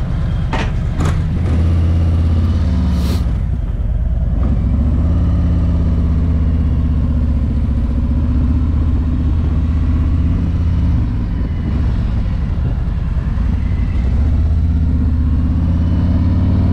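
2021 Harley-Davidson Road Glide's Milwaukee-Eight 107 V-twin running as the bike rolls off at low speed, its low rumble swelling a few times as the throttle opens. A few short clicks in the first three seconds.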